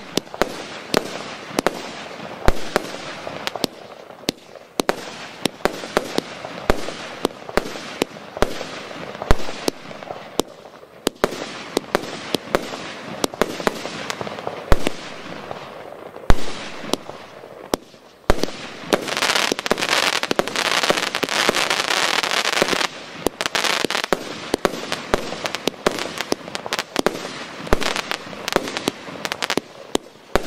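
A 77-shot, 25 mm calibre combined multi-effect firework cake firing shot after shot: sharp bangs of the tubes launching and the shells bursting, several a second. A little past the middle comes a dense, continuous crackle lasting about four seconds, and then the separate bangs resume.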